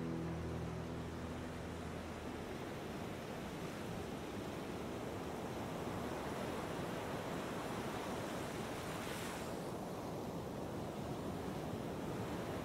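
The song's last sustained notes fading out over the first two seconds, leaving a steady rushing noise like surf, with a brief swell of hiss about three quarters of the way through.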